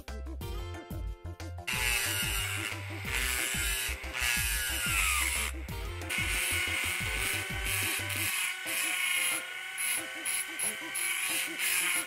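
A handheld rotary tool starts about two seconds in and runs with a high whine, grinding the paint off a die-cast metal toy car body. Its pitch shifts as the bit bears on the metal, with a brief break near the middle. Background music with a beat plays underneath.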